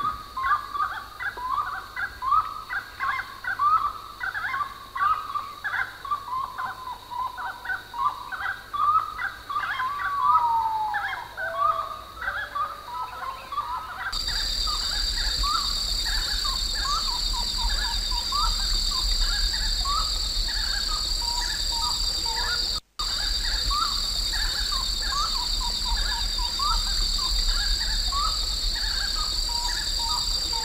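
Grey-necked wood-rail (chiricote) calling: a long run of short rising notes, repeated over and over. About halfway through, a steady high hum and a low hum come in under the calls, and the sound cuts out for an instant a little later.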